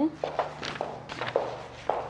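Footsteps of a person walking through a doorway into a carpeted bedroom, about six steps at an uneven pace.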